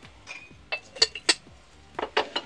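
A silver hammered-finish mug and its lid clinking against each other and the shelf as they are handled and set down, about four sharp clinks in quick succession in the middle.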